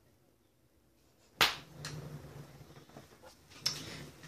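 A sharp knock about a second and a half in, then rustling and shuffling as a person shifts position on a bed close to the microphone, with another smaller knock near the end.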